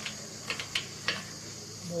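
Low outdoor background of a steady high insect drone, with three faint clicks in the first second or so. A woman's voice begins right at the end.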